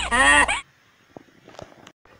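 Comic honking sound effect: a quick run of rising-and-falling honks that stops about half a second in. After it, only a few faint clicks are heard.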